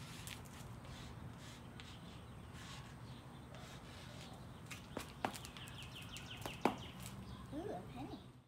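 Quiet outdoor background with a steady low hum. A bird chirps a quick run of short notes midway, and a few sharp taps come in the second half.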